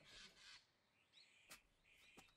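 Near silence: a faint hiss and a single faint click about one and a half seconds in.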